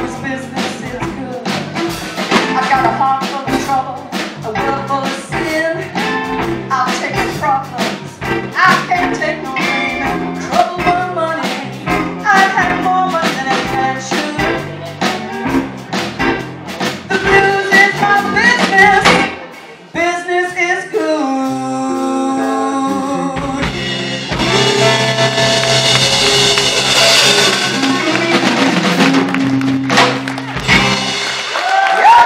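Live band with a female lead singer, two electric guitars and a drum kit playing a song at full volume. About twenty seconds in, the steady beat stops and the band holds sustained chords, then rings out on a long final chord under washing cymbals to close the song.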